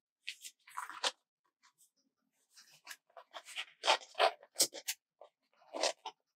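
Planner sticker sheet and paper rustling and crinkling as they are handled, in short irregular bursts.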